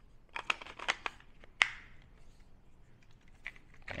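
Handling noise from battery-powered electric salt and pepper grinders: a quick run of sharp plastic clicks and knocks in the first second and a half, the loudest near the end of the run, then only a few faint ticks.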